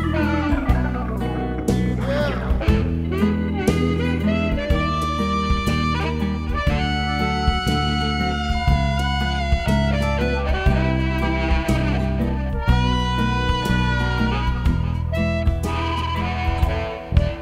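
Electric blues band playing an instrumental stretch with no singing: harmonica holding and bending long notes over guitar, bass and a steady drum beat.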